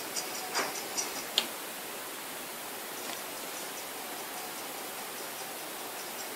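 Faint steady hiss of room tone, with three or four light clicks in the first second and a half.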